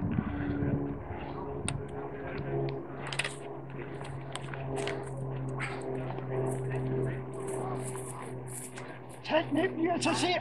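Quiet outdoor mix: a low steady hum with scattered light crackles and clicks, and faint voices in the background.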